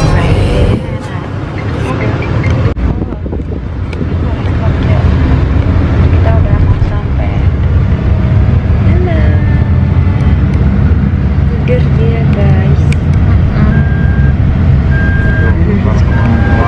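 Steady low rumble of engine and road noise inside a car's cabin, with faint voices underneath. Near the end a short beep repeats about once a second.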